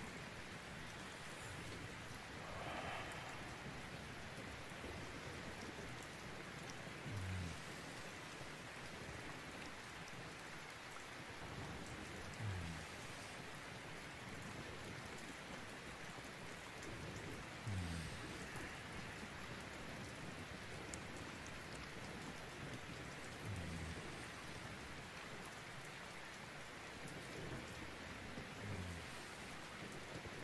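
Steady rain ambience, a continuous even patter, with a soft low thud about every five seconds.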